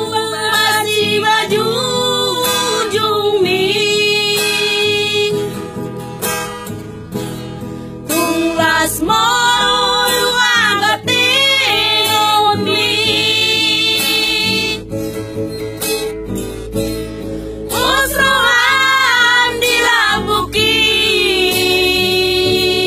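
Several women singing a Batak song together to acoustic guitar. They sing in phrases, and in two short gaps the guitar carries on alone.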